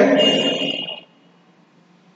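A man's voice holding out one word for about the first second, then near silence: room tone.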